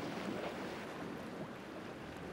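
Steady, quiet noise of open sea water and wind, with no distinct splashes or engine tones.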